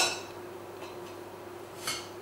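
A metal wire whisk set down on a ceramic plate with a sharp clink at the start, then near the end a softer clink as a spatula is drawn from a steel utensil holder.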